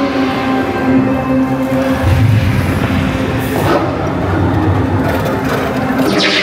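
Indiana Jones Adventure ride vehicle (an Enhanced Motion Vehicle) running along its track, with a low rumble that swells about two seconds in, under the attraction's music score.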